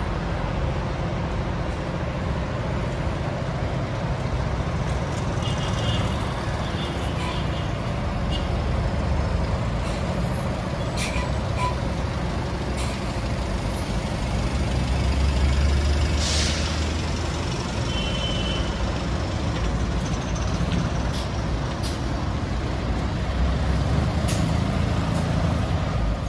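Road traffic at a city intersection: the steady low rumble of heavy vehicle engines, swelling for a moment with a short hiss of air brakes about sixteen seconds in.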